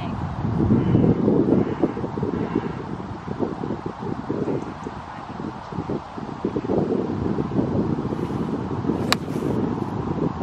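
Wind buffeting the microphone in gusts, with one sharp click of a golf iron striking the ball about nine seconds in.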